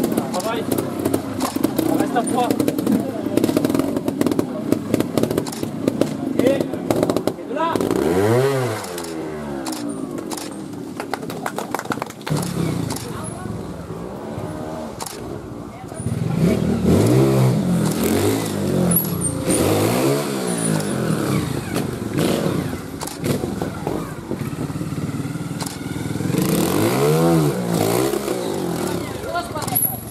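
Trials motorcycle engines revving in short blips that rise and fall as riders climb rock steps. Rapid camera shutter clicks come in quick succession in the first few seconds, over a background of spectator voices.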